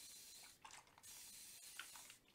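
Hand-trigger spray bottle misting water onto a watercolour painting: two faint, short hisses of spray about a second apart.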